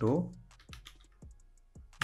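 Typing on a computer keyboard: a few separate keystrokes, about half a second apart.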